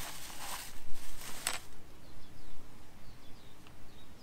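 A plastic bag rustling in the hands for about the first second and a half. After that, faint short bird chirps.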